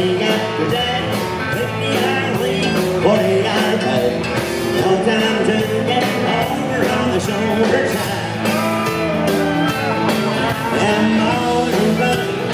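Live country band playing loud and amplified: acoustic guitar, electric bass, drums and fiddle, with the fiddle's sliding notes over a steady beat.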